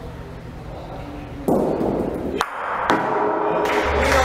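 A bocce ball thrown in a raffa shot lands hard on the court and rolls, then strikes another ball with a sharp clack, followed by a second knock about half a second later.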